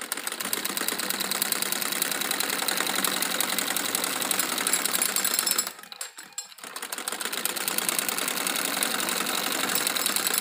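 Domestic sewing machine stitching a seam through cotton fabric, a rapid, even ticking of the needle. It runs in two stretches with a short stop a little past halfway.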